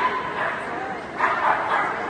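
Small agility dog barking in short, sharp yaps while running the course, one right at the start and a quick cluster of louder yaps a little past the middle.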